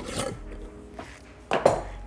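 Light clinks and knocks of kitchen utensils and containers being handled, with a louder knock about one and a half seconds in.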